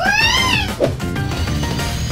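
A short, high cartoon cry that rises and then falls in pitch, lasting about half a second, over background music.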